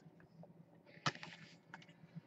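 Faint handling of a small cardboard trading-card box: a sharp click about a second in, with a short scrape around it and a few light ticks after.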